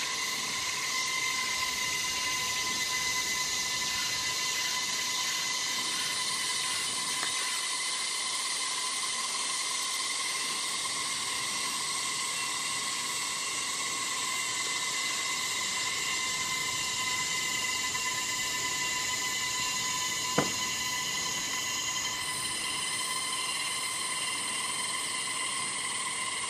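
A steady high-pitched droning hiss with several constant whining tones, the highest tone jumping up in pitch twice, and a single sharp click about twenty seconds in.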